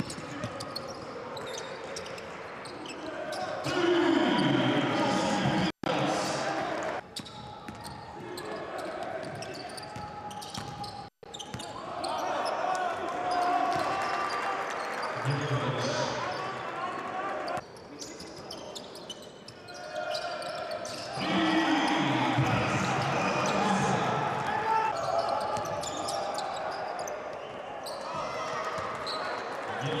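Basketball arena game sound: a ball bouncing on the hardwood under a noisy crowd in a large hall. The crowd swells louder several times, about 4, 12 and 21 seconds in, and the sound cuts out for an instant twice between clips.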